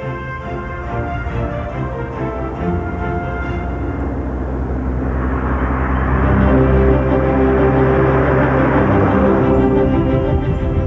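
Dramatic orchestral soundtrack music with long sustained notes, growing louder; in the second half a rushing noise swells up and fades away near the end.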